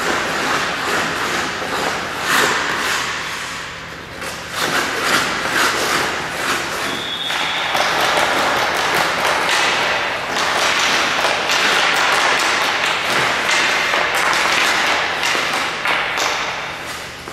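Hockey skate blades scraping and carving on rink ice, with the stick blade knocking and tapping against the puck during stickhandling. The scraping is busier and louder in the second half.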